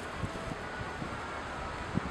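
Wind rushing over the microphone, a steady noise with a few faint low knocks.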